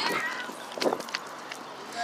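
A girl's laugh trailing off at the start, then a short breathy voice sound about a second in, over a low steady hiss.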